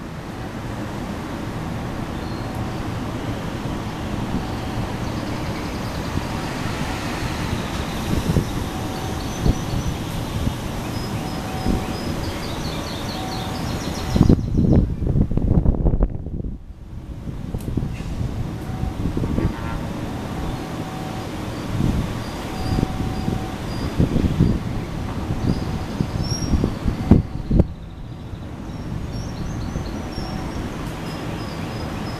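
Diesel-electric locomotive hauling a passenger train slowly into a station: a steady engine drone with wheels rumbling on the rails and irregular low thumps. The thumps grow louder about halfway through and again near the end.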